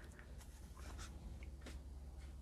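Faint scratching of a watercolour brush moving across paper, a few light strokes, over a low steady hum.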